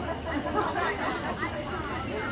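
Chatter of several people talking over one another, with no single voice standing out.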